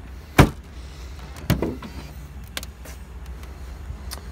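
Clunks from a 2013 Honda Pilot's rear liftgate hardware being handled. One sharp, loud clunk comes about half a second in and a softer one about a second later, then a few light clicks, over a steady low rumble.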